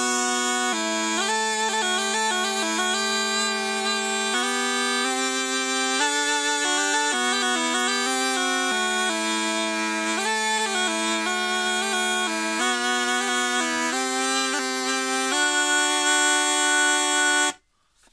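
Dorian aulos, a double-piped reed instrument, played with both pipes sounding at once: a lower note that shifts every few seconds under a faster-moving melody on the other pipe. The playing stops suddenly near the end.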